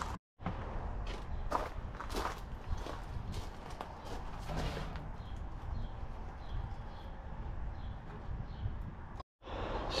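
Handling sounds of masking off a metal tool box: painter's tape pulled and pressed on with short scattered rustles and clicks, and shoes shifting on gravel. Faint high chirps repeat about twice a second in the second half.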